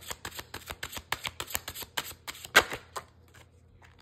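A tarot deck being shuffled by hand: a quick run of papery card clicks and slaps for about three seconds, the loudest a little past halfway, then only a few soft taps as the shuffling stops.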